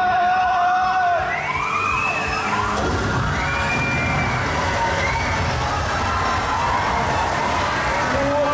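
Show music with a held note, then about three seconds in a large dump of water pours out of a stage-prop tower and splashes onto the stage and into the pool, running on as a steady rush. A crowd cheers and whoops over it.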